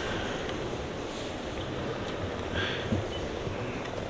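A steady low rumbling noise of air buffeting a microphone held close.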